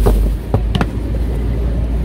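Jujube fruits scooped with a glass jar, knocking and clicking a few times a little after half a second in, over a steady low rumble.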